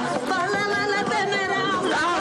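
Chatter of several people talking over one another at once.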